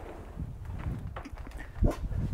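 Footsteps and a dog's paws on a wooden deck: irregular soft knocks over a low rumble, with one sharper knock a little before the end.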